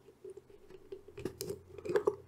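Faint small clicks and scratches of a diode's wire leads being pushed into a solderless breadboard.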